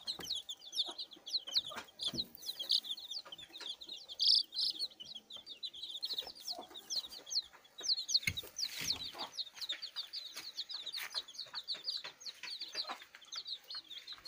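A brood of native chicken chicks peeping non-stop: many short, high, falling chirps overlapping, several a second, with a few soft knocks and rustles among them.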